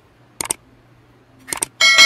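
Subscribe-button animation sound effect: two quick pairs of mouse clicks, then a notification bell ding near the end that rings on and fades.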